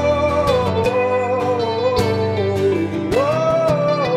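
A male voice singing long, wavering 'whoa' notes over acoustic guitar and a steady beat. The note sinks away and a new one slides up about three seconds in.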